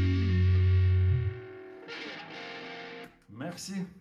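Distorted electric guitar holding a final chord that slides down in pitch and cuts off a little over a second in. A man's voice follows, saying "Merci" near the end.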